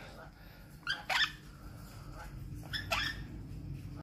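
Young lutino monk parakeet giving short squawking calls, two quick pairs: one about a second in and another near the end.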